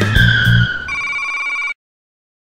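The end of an animated logo jingle. The music and a falling tone stop a little over half a second in, then a steady electronic ringing tone holds for almost a second and cuts off suddenly.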